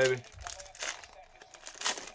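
Foil trading-card pack wrapper being torn open and crumpled by hand: a run of short, sharp crinkles, the loudest near the end.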